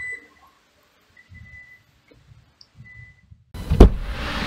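Faint electronic beeps, a short high tone repeated three times about a second and a half apart, with soft shuffling between. Near the end a single loud thump.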